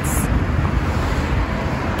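Steady noise of car traffic passing on a wide city road, with a low rumble of wind on the microphone.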